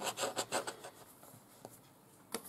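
Hands shifting a plastic quilting ruler over terry towelling on a cutting mat: a few short rubbing scuffs in the first second, then near quiet with one faint tick.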